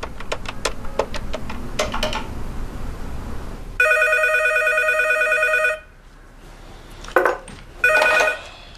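Corded desk telephone ringing with an electronic trill: one ring of about two seconds, starting about four seconds in, with the next ring beginning right at the end. Before the ring there is a run of quick clicks.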